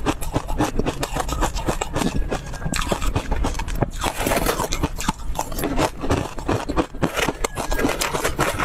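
Close-up crunching and chewing of a crumbly food, with a metal spoon scraping and scooping through it in the bowl: a dense, continuous run of small crunches and scrapes.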